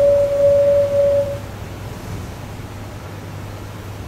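A single steady mid-pitched tone lasting under two seconds: the Ferranti Pegasus computer's signal that a stage of its operation is complete, heard from an old film soundtrack played over a hall's loudspeakers. A low steady hum and hiss continue after it.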